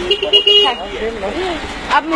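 A vehicle horn gives one short toot, about half a second long, at the start over street speech.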